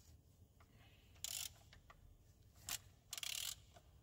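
Faint ratcheting clicks from a socket wrench turning a car engine's crankshaft by hand, in three short bursts: one about a second in, a single click, then a quick run of clicks near the end.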